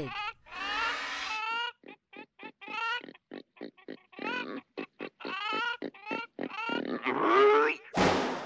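A pig squealing and grunting: a quick run of short, high squeals, then a longer, louder rising squeal near the end.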